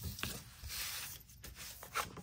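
A scoring tool drawn along paper to crease it: a soft scrape lasting about a second, with a light tap near the start.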